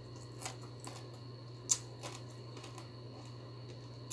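Close-up mouth sounds of chewing a mouthful of rice and bitter gourd: a few short, sharp wet clicks and smacks, the loudest about one and a half seconds in, over a steady low hum.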